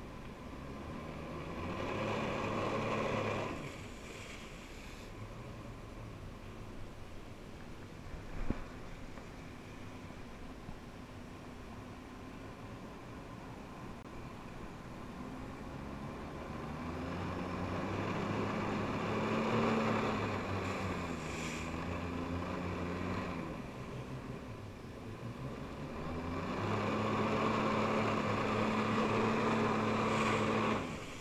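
Personal watercraft engine driving a Flyboard through its hose. It runs at a low hum and is throttled up three times, a short surge near the start, a longer one in the middle, and a steady one at the end as the rider lifts out of the water. Water rushes with each surge.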